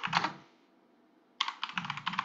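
Typing on a computer keyboard: a quick run of key clicks, a pause of about a second, then another run of clicks near the end.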